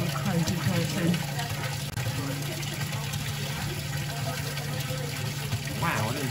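Salt-saturated brine pouring from a wooden spout into a stone basin: a steady splashing rush of falling water.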